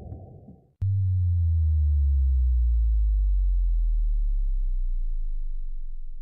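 Synthesized trailer sound effect: a low rumble dies away, then a sudden deep boom hits about a second in and sinks slowly in pitch as it fades, with a thin steady high whine over it.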